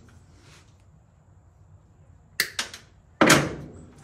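Hand tools knocking against a wooden board: a sharp click a little over two seconds in, a few small ticks, then a louder clatter near the end that dies away quickly.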